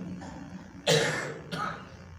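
A man's single short cough about a second in, sharp at the start and dying away over about half a second, as his speech breaks off.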